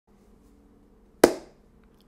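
A single sharp impact about a second in, dying away within a fraction of a second, over faint steady room hum.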